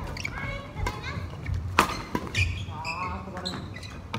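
Badminton racket striking a shuttlecock with a sharp smack, the loudest sound, a little under two seconds in. Around it are voices calling out and a few dull low thuds.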